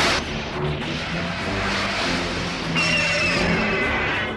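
Monster-movie battle sound effects: a continuous dense rumble of blasts and energy attacks, loudest in a burst at the start, with a held pitched cry or whine in the last second.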